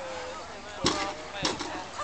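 Agility seesaw plank banging down twice, about half a second apart, as the dog works the teeter.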